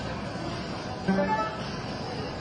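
Steady murmur of a large hall, broken about a second in by a short, loud horn-like electronic tone from the soft-tip dart machine as its scoreboard changes round.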